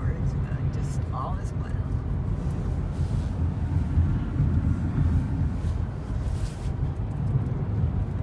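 Steady low road rumble heard inside the cabin of a car driving along, the tyre and engine noise of the moving vehicle.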